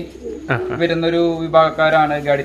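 Domestic pigeon cooing: a long, low held coo that starts about half a second in.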